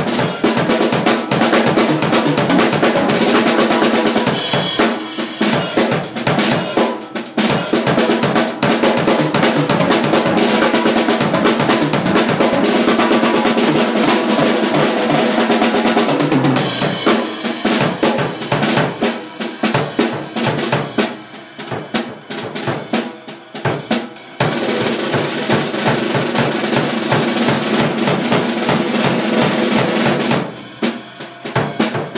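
Acoustic drum kit played hard and continuously in fast rolls and fills across the snare and toms over the bass drum and cymbals, with a short break a little past the middle and a lighter stretch after it before the playing picks up again.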